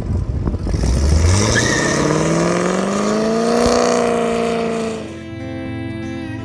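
Cars launching from a drag-race start line, the engine note rising steadily in pitch under full acceleration for about four seconds. It then fades near the end as music comes in.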